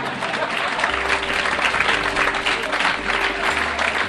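Audience applause: a dense, steady clatter of many hands clapping, over a soft background music bed of sustained low notes.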